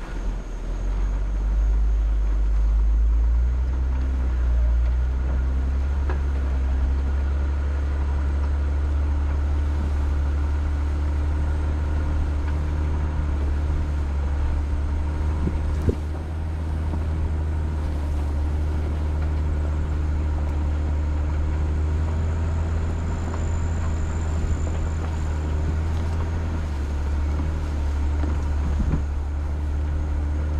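Vehicle engine running steadily while driving across a grass field, a deep low hum with one sharp knock about halfway through.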